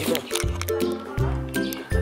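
Background music with a steady, repeating bass beat and a simple melody of held notes above it.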